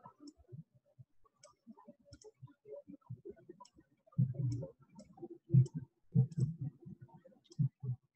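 A computer mouse clicking irregularly, with duller, louder knocks from about four seconds in.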